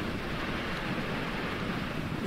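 Waterfall gushing from a cliff face into a rocky stream: a steady rush of falling water.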